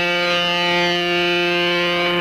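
A single loud tone held dead steady at one pitch, rich in overtones.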